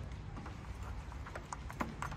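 Footsteps on brick paving: a handful of hard, irregularly spaced clicks over a low, steady outdoor rumble.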